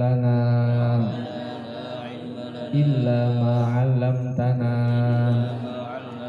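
A man chanting an Arabic prayer into a handheld microphone in long, drawn-out held notes: one held for about a second at the start, then a longer one held for about two seconds from about three seconds in.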